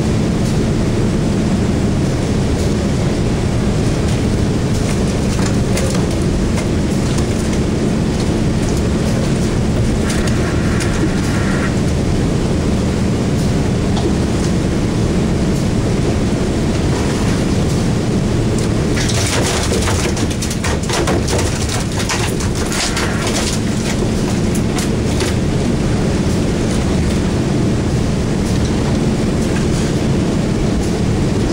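Steady low drone of an idling boat engine, with a short spell of splashing water about 19 to 23 seconds in.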